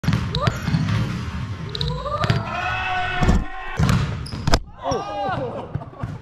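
Volleyballs being struck and bouncing on a wooden gym floor: several sharp slaps that echo around a large hall, with players' voices.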